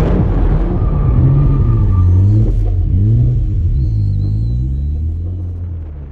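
Drift car engine revving up and down with a deep rumble, the pitch rising and falling repeatedly, easing off near the end.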